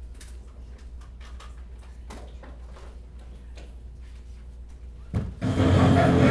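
Low room hum with scattered faint clicks, then, about five seconds in, a video's soundtrack starts abruptly and loudly over the room speakers: music with voices.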